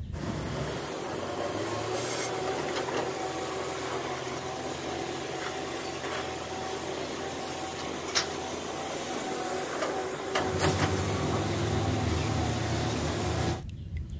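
Sumitomo SH210 hydraulic excavator at work: its diesel engine running steadily with scraping and a few sharp clunks as it loads soil into a dump truck. The low engine rumble grows louder near the end.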